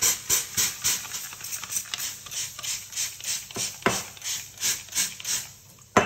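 Trigger spray bottle misting water over a sourdough loaf in a preheated cast-iron Dutch oven base: rapid squirts, each a short hiss, about three or four a second. One sharper click comes about four seconds in, and the spraying stops just before the end.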